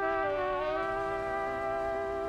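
Background music: a sustained chord of held notes that enters at the start and stays steady, with only small shifts in pitch.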